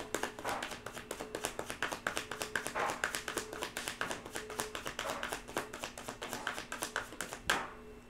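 Tarot deck being shuffled by hand, the cards tapping and slapping together several times a second. It ends with one louder swish shortly before the end.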